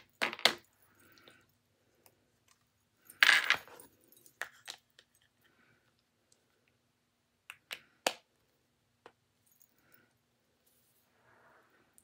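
Plastic phone cases being handled and snapped off and onto an iPhone: scattered clicks and knocks, the loudest about three seconds in, with a few lighter ones later.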